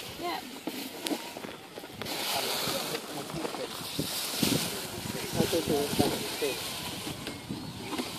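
Thin plastic bags rustling and crinkling as they are handled close by, loudest from about two to five seconds in, with voices talking in the background.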